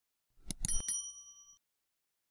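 Subscribe-button sound effect: two quick clicks, then a bright bell ding that rings for about a second and fades.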